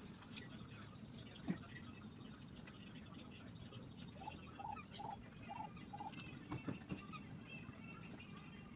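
Faint outdoor quiet. About halfway through, a bird gives five short, evenly spaced notes, with fainter chirps around it, and there are a few soft knocks and rustles from wet clothes being handled and hung out.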